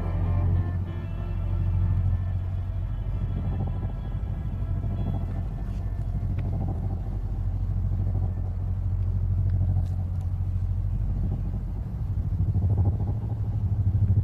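Film soundtrack: the last held notes of music fade out about five seconds in, over a steady deep low rumble that carries on throughout.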